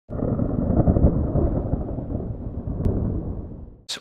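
A loud, low rumbling noise that starts suddenly, fades away over about four seconds and stops just before speech begins.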